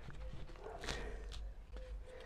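Faint scraping and rustling of a plastic scoop digging potting soil out of a plastic bucket and tipping it into a pot, with two brief sharper scrapes around the middle.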